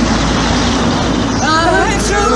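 A passing road vehicle, an even rushing noise, then voices start singing the next line of a ballad about a second and a half in.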